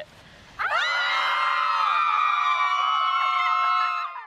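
Several young women screaming together in mock fright, starting about half a second in and held for over three seconds before cutting off.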